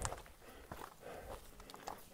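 Faint footsteps on a rocky, gravelly trail: a few irregular steps and scuffs, sharpest at the start and again near the end.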